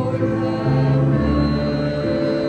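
Small mixed chamber choir, men's and women's voices together, singing in harmony with long held notes that shift a few times.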